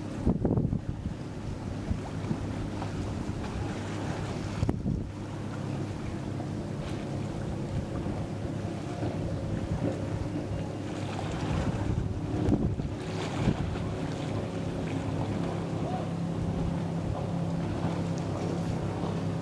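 Steady low drone of a motorboat engine out on the water, with wind gusting across the microphone in a few surges.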